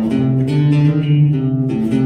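Acoustic guitar playing a single-note melodic phrase in C with a bluesy flatted third (E-flat), the notes held and changing about every half second.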